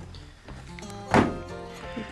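Background music, with a single wooden knock about a second in as a wooden enclosure panel is set into place.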